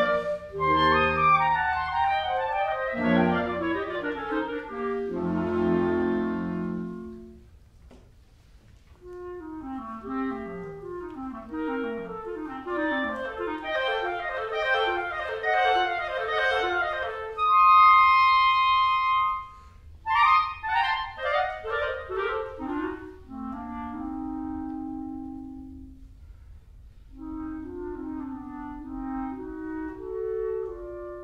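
Two solo clarinets playing a classical duet with a clarinet choir accompanying. The fuller passage dies away, then come fast running figures, a single held high note, quick descending runs, a low held note, and a softer passage near the end.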